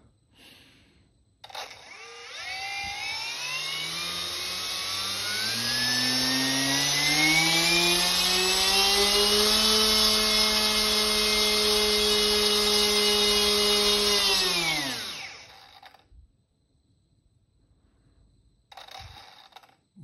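T-Motor F1507 2800kv brushless motor spinning a 7x4 carbon folding prop on a thrust-test stand: a whine that rises in pitch for several seconds as the throttle is opened, holds steady at full throttle for about six seconds, then falls away and stops.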